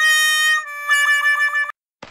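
Sad trombone 'fail' sound effect: the falling 'wah-wah' notes, ending on a long, wavering low note that cuts off near the end.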